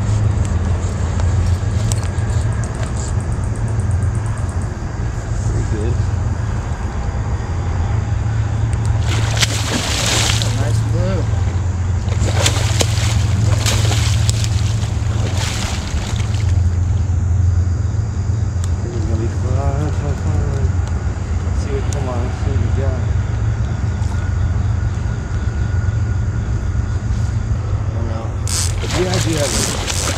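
A hooked catfish splashing at the surface in several short bursts, the longest a few seconds in, over a steady low hum that is the loudest sound throughout.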